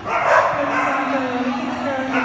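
Excited dog barking and yipping during an agility run, in quick falling calls, loudest just after the start.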